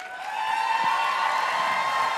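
Audience applauding and cheering, swelling over the first half second and then holding steady.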